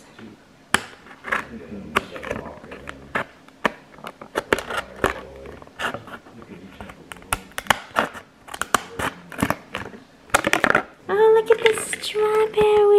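Scissors cutting through a thin, clear plastic tray: a run of sharp, irregular snips and cracks of the plastic. A voice starts near the end.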